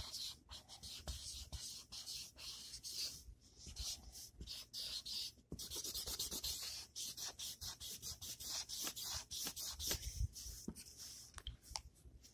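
Colouring tool rubbing across paper in a quick run of short back-and-forth strokes, several a second with brief pauses, as an area of a drawing is filled in.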